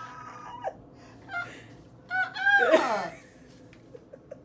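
A high-pitched, excited squeal of delight, a cry that rises and then falls away, about two seconds in, after a brief held hum at the start.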